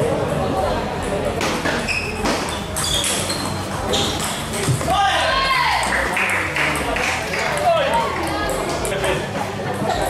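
Table tennis balls clicking off paddles and tables in rallies, with many sharp, irregular pings. Voices chatter throughout.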